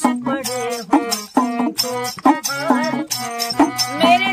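Folk-style Hindi song: voices singing, accompanied by a small hand-held frame drum with metal jingles struck by hand in a steady beat of about two strokes a second, the jingles rattling on each stroke.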